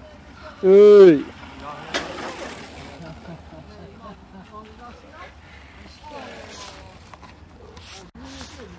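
A loud, drawn-out shout of encouragement from a spectator, one call that rises and falls in pitch, about half a second in, followed by a short knock a second later; after that only faint outdoor background with distant voices.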